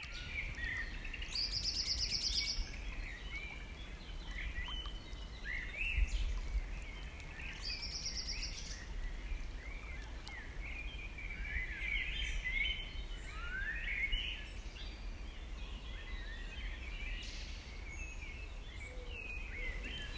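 Several wild birds singing and calling in short chirps, with two brief, very high trills, over a steady low rumble.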